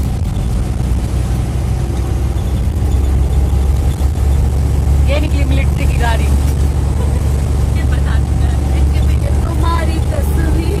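Steady low rumble of a moving bus's engine and road noise, heard from inside the cabin.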